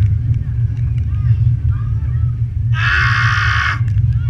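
Steady low rumble of wind and ride motion on a thrill ride's onboard camera microphone, with a rider's raspy scream lasting about a second near the end.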